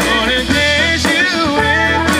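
Live band music played loud: a man singing into a microphone over guitar, bass and drums.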